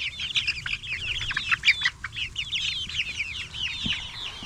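A flock of young chickens calling together: a dense, overlapping chatter of short, high chirps and trills with no pause.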